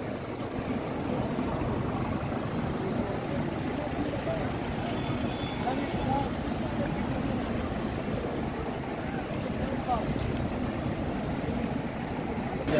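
A steady low outdoor rumble, wind noise on a handheld microphone blended with a mountain stream's rush, with a few faint voices of people talking.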